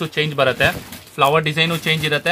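A person speaking, in short phrases with a brief pause just before the middle.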